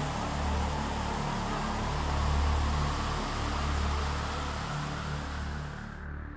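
Steady rushing of a waterfall pouring down a rock face, with background music carrying a deep, slow-changing bass line underneath. The water sound cuts off at the very end.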